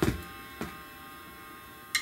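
Two strokes on a drum kit: a loud hit right at the start, its low ring falling in pitch as it dies away, then a lighter stroke about half a second later.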